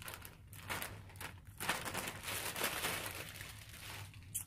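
Clear plastic garment packaging crinkling and rustling irregularly as a baby dress is handled and pulled out of its bag.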